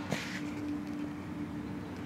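A quiet, steady hum on one pitch, with a short breath-like hiss and a soft click just at the start.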